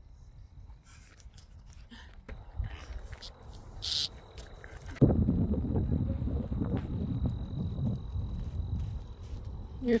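Wind buffeting a phone microphone, starting suddenly about halfway and going on as an uneven low rumble. Before it the air is quiet, with a few faint clicks and one short high chirp.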